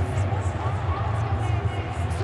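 Large football stadium crowd cheering and shouting in celebration of a goal: a steady, dense roar of many voices, heard through the match broadcast.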